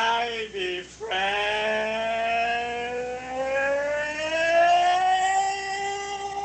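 A voice holding one long drawn-out note. A short wavering note comes first, then from about a second in the long note slowly rises in pitch and is still held at the end.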